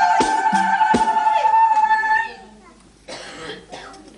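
Libyan zamzamat wedding music: women's voices holding a long sung note over a few hand-drum beats, which break off about halfway through. Then only short, noisy vocal sounds.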